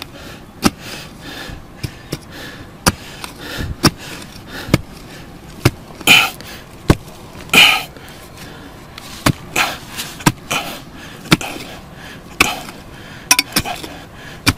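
A hand digging tool scraping and knocking against soil as ground is cleared: sharp, irregular knocks every second or so, with two longer scrapes about six and seven and a half seconds in.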